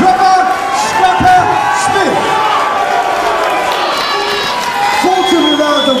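A boxing crowd in a hall cheering and shouting, many voices at once, as a boxer is introduced; a man's voice over the PA comes in near the end.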